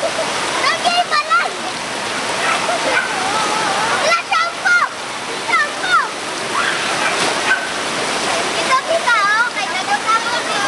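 River in flash flood, the fast floodwater rushing steadily. People's voices calling and talking over it throughout.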